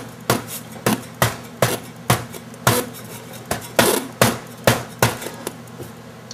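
Hand knocking on the chassis and heat sink of a Sony STR-D450Z stereo receiver: a run of about a dozen sharp knocks, two or three a second. It is the tap test for the receiver's cold solder joints, jarring the loose connections.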